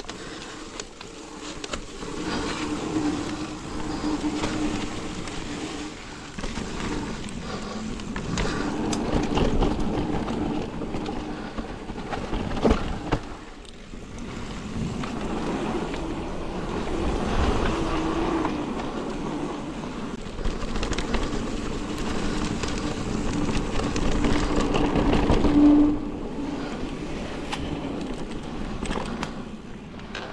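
Mountain bike rolling down a wet dirt singletrack: tyre noise and the bike rattling over the bumps, with a low rumble and a hum that swell and fade with speed. A single sharp clack comes a little before halfway.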